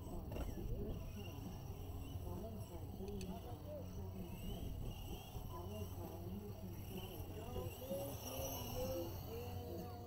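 Background voices at the track with the whine of RC short course truck motors, rising and falling as the trucks speed up and slow down.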